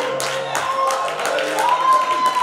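A congregation clapping a steady beat, about four claps a second, over church music. A long held note comes in near the end.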